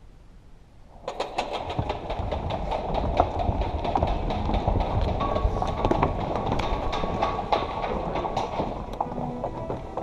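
Audience applause that breaks out suddenly about a second in, a dense spatter of claps that carries on steadily.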